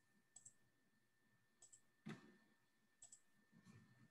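Faint computer mouse clicks over near silence: three quick double clicks about a second and a half apart, with a soft thump about two seconds in.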